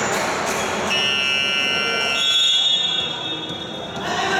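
Basketball scoreboard buzzer sounding one steady, electronic tone for about three seconds, starting about a second in, with a second, higher tone joining partway through, over the noise of the sports hall.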